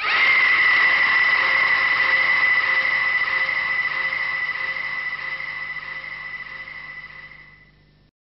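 A woman's long, high scream that starts suddenly, is held on one steady pitch, and slowly fades away over about eight seconds.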